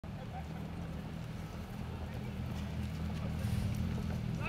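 Outdoor street ambience: a low, steady rumble under faint voices, with scattered sharp clicks that fit camera shutters.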